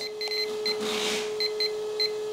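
Several short electronic beeps from a Flysky Paladin EV radio transmitter as its touchscreen minus button is tapped repeatedly to step a curve rate down towards zero, over a steady low tone.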